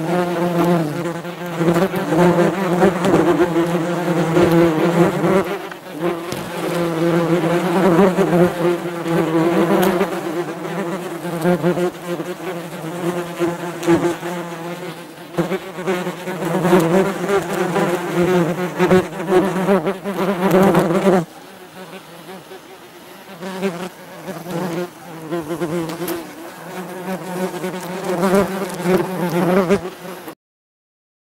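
Yellowjacket wasps buzzing in flight close by: a loud, low, wavering wing drone. It drops off sharply about two-thirds of the way through, then goes on more faintly.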